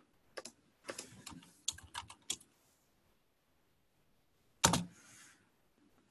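Typing on a computer keyboard: a run of quick keystrokes over the first two and a half seconds, then a pause and one louder click near the end.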